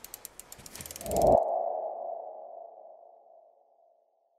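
Logo sting sound effect: a quick run of clicking ticks, then a ringing tone that swells about a second in and fades away over the next two seconds.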